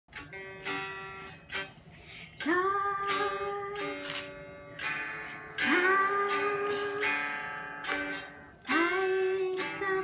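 Squier Stratocaster-style electric guitar being played: a chord struck about every three seconds and left to ring and fade, with quieter picked notes between.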